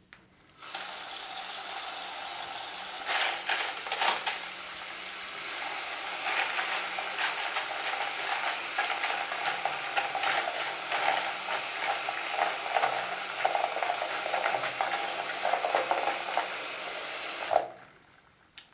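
Tap water running into a plastic tub in a sink, filling it with soapy water; it starts about half a second in and stops just before the end. Plastic keycaps knock and rattle against each other and the tub as a hand stirs them in the water.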